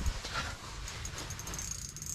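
Spinning ice-fishing reel being cranked and the rod handled as a hooked crappie is brought up through the ice hole. There is a steady rustling hiss, and a thin high whine comes in near the end.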